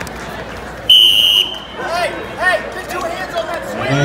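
A short, shrill, steady signal tone lasting about half a second, about a second in, marking the end of a high school wrestling bout by a fall. Shouts and chatter from the gym crowd follow it.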